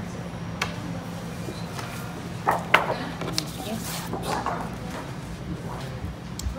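Restaurant background: a steady low hum with faint voices in the room and a few sharp clatters, the loudest two close together near the middle.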